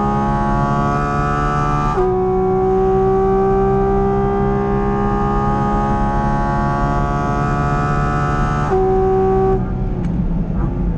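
Porsche 718 Cayman GT4 RS's naturally aspirated 4.0-litre flat-six at full throttle, heard from inside the cabin, its pitch climbing steadily through the gears. There is a quick upshift about two seconds in and another near the end, then the driver lifts off the throttle and the engine note falls away for braking.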